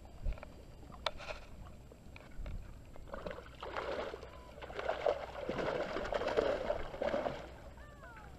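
Water splashing and sloshing as a keepnet full of fish is worked through the shallows at the lake's edge, with a light knock about a second in and the splashing building from about three seconds in.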